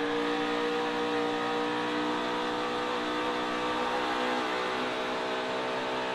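NASCAR Cup Series stock car's V8 engine running at racing speed, heard from the car's own onboard camera; its pitch holds nearly steady throughout.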